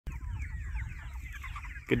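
A flock of chickens penned in chicken tractors, many birds cheeping and clucking at once in short overlapping calls, with a low rumble underneath.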